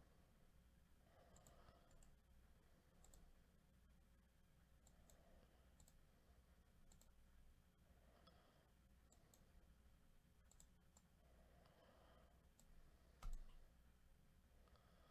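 Near silence with faint computer mouse clicks scattered roughly once a second, and one louder click near the end.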